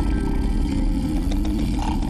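A person snoring very loudly: one long, rough, rumbling snore, heavy in the low end and strong enough to make a glass of water on the bedside table ripple.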